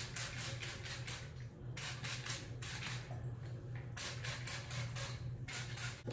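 Trigger spray bottle squirting water onto hair in quick runs of short hissing sprays, several a second, pausing twice. A low steady hum runs underneath.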